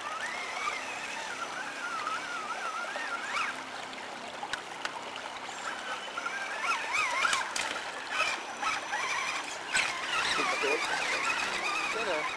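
Brushless electric motor of a Traxxas Summit RC crawler whining, its pitch wavering up and down with the throttle, over the steady rush of a shallow stream.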